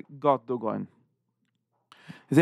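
A man speaking in Yiddish for about the first second, then a pause of near silence for about a second before his speech starts again at the end.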